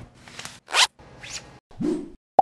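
A few short zipper pulls, each lasting a fraction of a second, with sudden cuts to silence between them.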